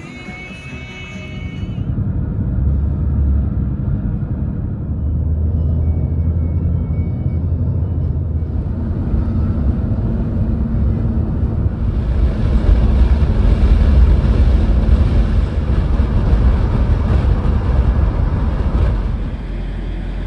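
Road noise of a car in motion: a steady low rumble, joined about twelve seconds in by a louder tyre and wind hiss.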